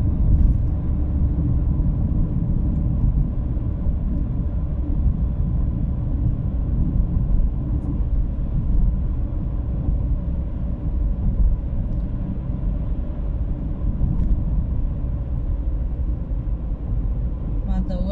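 Steady low rumble of a car driving at an even pace on a paved road, with engine and tyre noise heard from inside the cabin.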